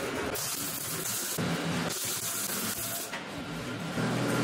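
Electric arc welding on thin barrel steel: two crackling, hissing runs of the arc, each about a second long, with a short break between.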